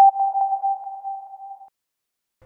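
A single electronic ping sound effect: one clear tone that starts sharply, wavers slightly and fades out over about a second and a half.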